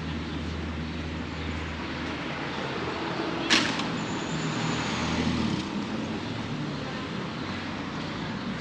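Street ambience with the steady low hum of motor traffic, strongest in the first two seconds. About three and a half seconds in comes a single sharp clack, the loudest sound, followed by a brief faint high whine.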